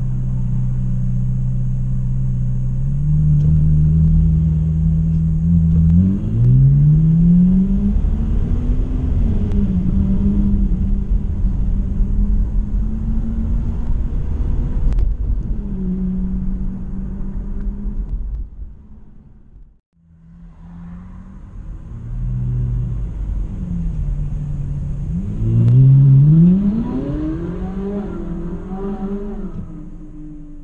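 Car engines heard from inside a moving car's cabin: a steady low engine note, then rising pitch as the car accelerates about six seconds in and again near twenty-five seconds in. The sound briefly drops away almost to silence around the twentieth second.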